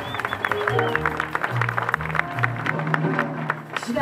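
Live jazz combo in an instrumental passage: upright bass holding low notes under steady drum and cymbal strokes, with a short high flute line falling away in the first second.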